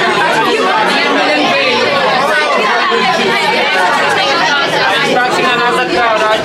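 A packed crowd of people talking and calling out all at once, a steady, loud din of overlapping voices.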